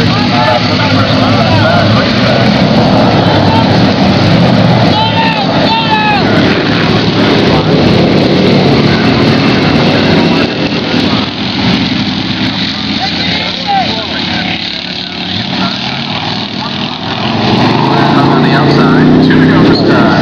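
Motor vehicle engines running, with people's voices over them; the sound eases off for a while past the middle and comes back up near the end.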